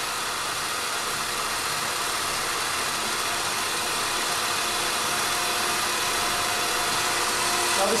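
Electric stand mixer running steadily, its whisk beating a cream, condensed-milk and egg mixture; a noisy, even motor whir.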